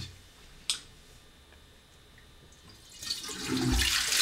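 A single sharp click, then from about three seconds in, water rushing into the bowl of a Swedish urine-diverting, dual-flush toilet as it is flushed on its short urine setting, with a low thump near the end.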